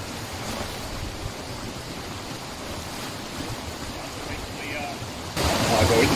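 Steady outdoor wind noise, an even rushing hiss with no distinct events, which becomes suddenly louder near the end.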